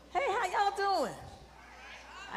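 A high-pitched voice calling out a drawn-out exclamation that wavers and then drops steeply in pitch, lasting about a second.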